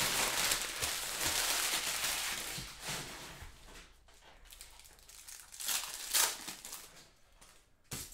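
Cellophane card-pack wrappers crinkling as opened packs are handled and cards are slid out. The crinkling is loudest for the first three seconds, with a few short bursts again about six seconds in.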